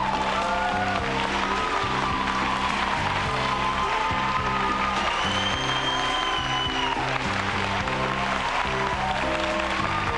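Studio audience applauding over upbeat band music with a steady bass line.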